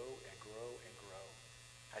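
A man's speaking voice trails off about a second in, leaving a steady low hum running underneath.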